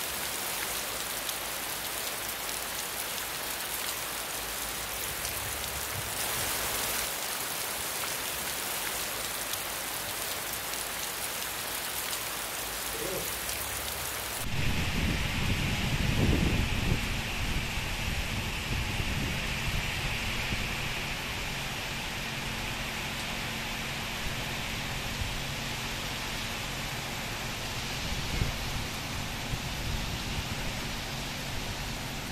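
Heavy rain falling on wet pavement, a steady hiss. About halfway through the sound changes abruptly to a fuller downpour with a low rumble underneath, loudest for a couple of seconds just after the change.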